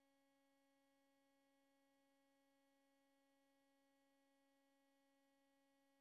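Near silence: only a very faint, steady hum of constant tones.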